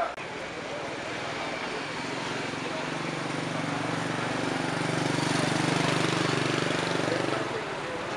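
A road vehicle's engine passing close by in street traffic, a steady low hum that grows louder for a few seconds and then drops away shortly before the end, over general traffic noise.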